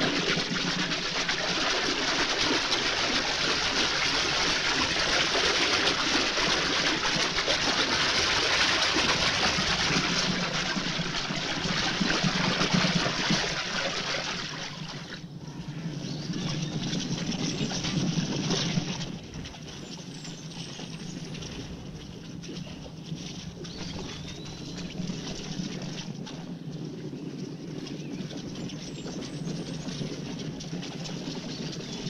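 Many cavalry horses splashing through a shallow river, a dense rush of water and hooves that eases off about fifteen seconds in. After a short louder spell it gives way to the quieter, steady hoofbeats of a large body of horses galloping over dry ground.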